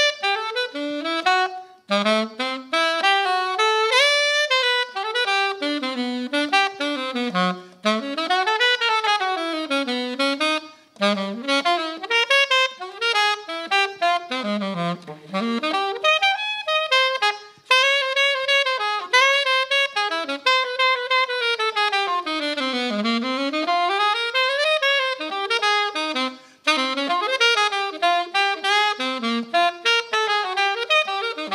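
Unaccompanied alto saxophone playing a jazz solo: quick runs that climb and fall over a wide range, in phrases separated by short gaps.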